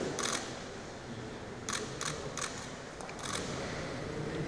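Camera shutters clicking: a handful of short sharp clicks, several in quick succession, over quiet room tone.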